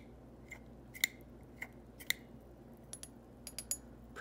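Pilot Con-70 push-button converter being pumped to draw ink up through the nib: light clicks about twice a second as the plunger is pressed and let spring back, then several quicker, fainter ticks near the end.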